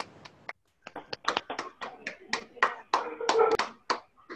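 Hand clapping heard through a video call's audio: a run of sharp claps, about four a second, starting about a second in.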